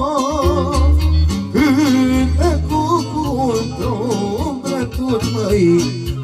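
A man singing a Romanian folk song into a microphone over amplified instrumental backing with a steady bass. He holds long notes with a wide vibrato near the start, then carries a moving melody.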